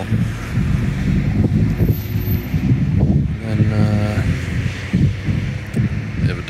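Road traffic: cars driving through an intersection, a steady low rumble of engines and tyres, with wind on the microphone.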